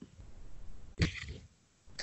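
A brief, faint throat noise from a person about a second in, over low background noise.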